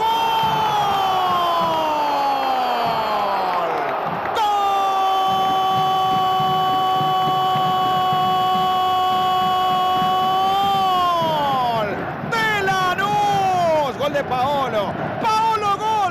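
A Spanish-language football commentator's long goal cry of "gol". It starts as a shout falling in pitch over about four seconds, then a second note is held steady for about six seconds and falls away, followed by shorter excited shouts, with the stadium crowd cheering underneath.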